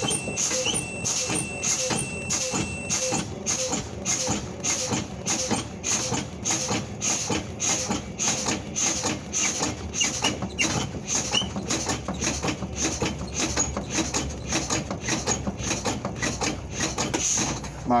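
School bus air brakes being pumped repeatedly: short bursts of exhausting air in quick, regular succession a few times a second, over the idling engine. This bleeds the system pressure down until the spring brakes pop out, at about 25 PSI. A steady high tone, the low-air warning buzzer, sounds for the first three seconds.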